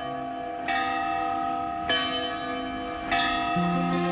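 A bell struck three times, about once every second and a quarter, each stroke ringing on into the next, over low sustained background music notes.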